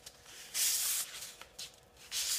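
The back of a knife drawn along a strip of sandpaper against a ruler's edge to crease it: one short, hissing scrape about half a second long, starting about half a second in.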